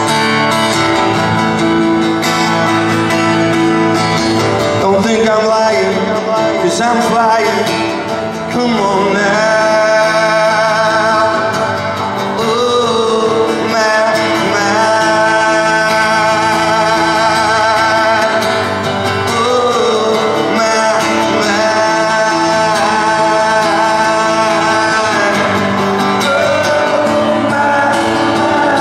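A man singing over a strummed Gibson acoustic guitar, played live. The guitar plays alone for the first few seconds, and the voice comes in about five seconds in.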